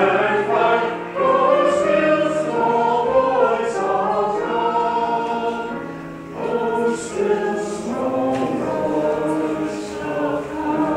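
Church choir singing with sustained notes, pausing briefly between phrases about six seconds in.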